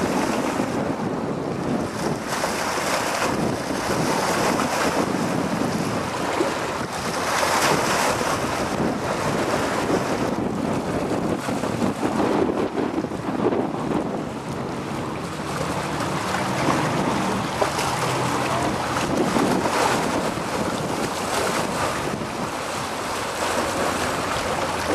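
Wind buffeting the microphone over choppy water, a steady rushing noise that swells and eases in gusts.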